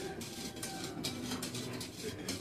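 A metal spoon stirring sugar water in a small metal pot, with light, irregular clinks and scrapes against the sides as the sugar is dissolved.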